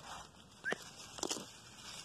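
Faint rustling of grass and weeds underfoot, with a couple of light clicks, one about two-thirds of a second in and another past a second, as someone walks through the weedy cornfield.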